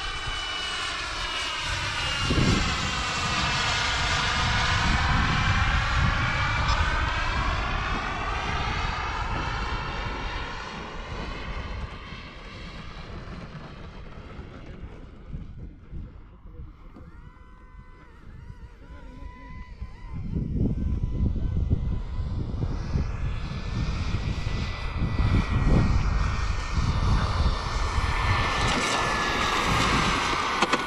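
Xicoy X-45 model gas turbine of a radio-controlled jet whining as the plane flies past: the sound sweeps in pitch and fades away about halfway through, then grows louder again as the jet comes back in on its landing approach. Gusts of wind rumble on the microphone.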